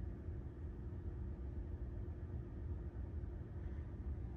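Quiet, steady low hum inside a Tesla Model 3's cabin.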